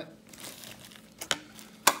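Clear plastic packaging crinkling as it is handled, then two sharp plastic clicks about half a second apart, the second the louder.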